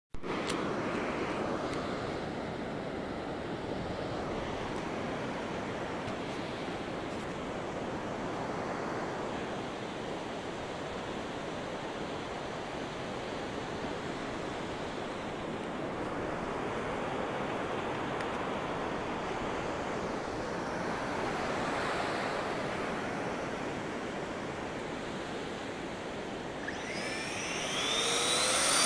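Steady wash of ocean surf. Near the end a rising whine begins: the model jet's 64mm electric ducted fan spooling up.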